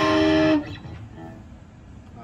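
Squier electric guitar played through an amp: a loud chord rings for about half a second, then is cut off short, leaving only faint notes.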